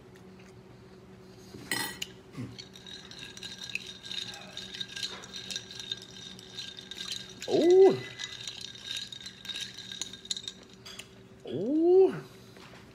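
Ice cubes rattling and clinking against the sides of a drinking glass as a straw stirs them, a steady run of small clicks for several seconds.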